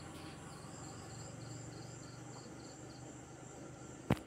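Faint cricket chirping, a steady run of short high chirps a few times a second, over a low steady hum.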